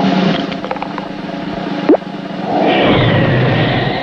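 Cartoon sound effects over a music bed: a short upward-sliding pop about two seconds in, then a rushing whirlwind as the cartoon 'instant tornado' sweeps through, swelling and holding to the end.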